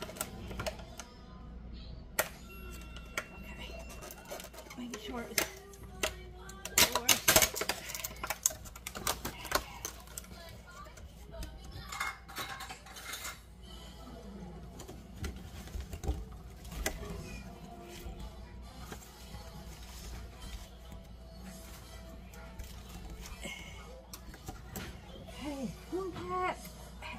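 Kitchen handling sounds while baby spinach is fetched and measured: scattered clicks, rattles and rustles, loudest in a cluster about seven seconds in, over faint background voices and music.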